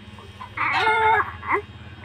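Newborn baby crying: one long, steady wail starting about half a second in and lasting most of a second, then a short cry.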